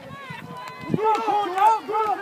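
Several voices shouting from the sideline, quiet at first and much louder from about a second in.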